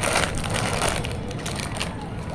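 Foil-lined potato chip packet crinkling and crackling as it is handled and tipped, the chips shifting inside.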